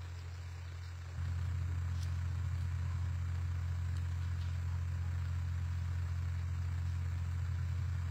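Steady low hum that gets louder a little over a second in, then holds level.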